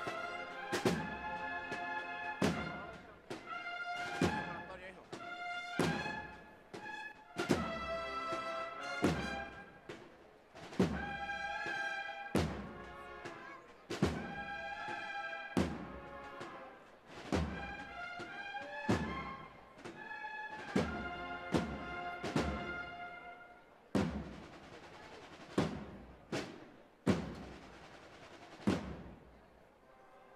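Brass band playing a processional march: sustained brass chords over a regular drum stroke about every second and a half. Near the end the brass drops away, leaving the drum strokes over a hissing wash.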